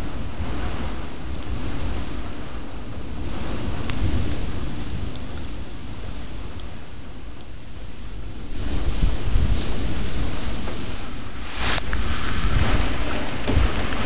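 Heavy summer downpour with gusting wind and a deep low rumble. The storm grows louder about two-thirds of the way through as a stronger gust comes in. A single brief click sounds near the end.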